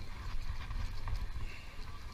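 Uneven low rumble of wind buffeting the microphone on a boat at sea, with scattered light knocks and clicks from handling the rod and reel.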